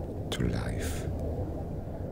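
Whispered voice, a few breathy hissing syllables, over a steady low rumble.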